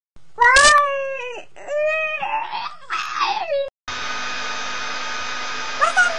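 A boy making drawn-out, wailing, crying-like vocal noises, several long sliding notes, while pulling faces. About four seconds in, a steady machine whir starts suddenly and keeps going, with one more sliding vocal note over it at the very end.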